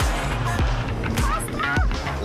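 Background music with a loud, dense mix and low pulses, with a brief voice a little past the middle.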